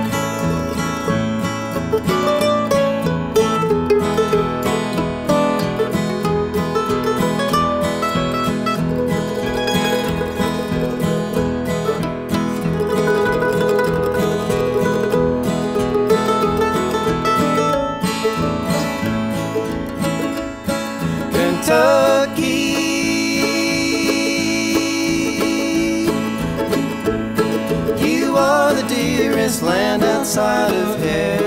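Acoustic guitar and mandolin playing a bluegrass instrumental introduction, with voices joining in singing near the end.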